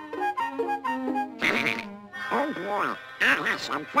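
Cartoon orchestral score with held woodwind notes, then Donald Duck's squawky, quacking voice in several short bursts over it.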